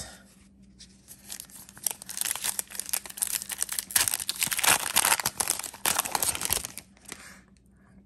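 A foil trading-card pack wrapper being torn open and crinkled by hand. It crackles in quick, dense bursts from about a second in, loudest in the middle, and dies away about a second before the end.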